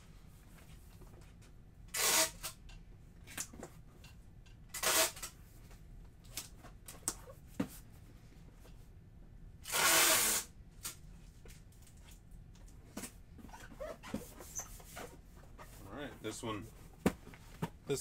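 Packing tape pulled off a roll and run across a cardboard shipping box to seal it: three short noisy pulls, the last and longest about ten seconds in, with small knocks of handling between.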